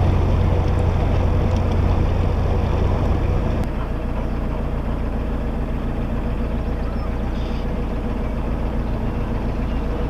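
Narrowboat diesel engine running steadily, its strong low hum easing about three and a half seconds in as the boat slows.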